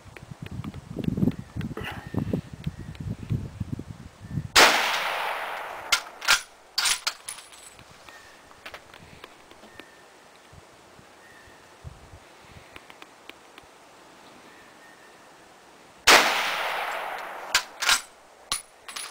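Two rifle shots from a 1903 Springfield in .30-06, about eleven and a half seconds apart, each trailing off in a long echo. A second or two after each shot come sharp metallic clicks of the bolt being worked.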